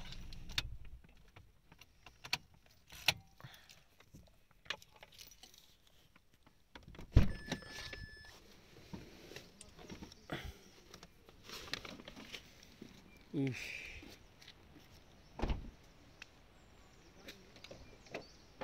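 Handling noises as people gather their things and get out of a parked car: scattered clicks and knocks, a heavy thump about seven seconds in followed at once by a short electronic beep, and two more thumps later on.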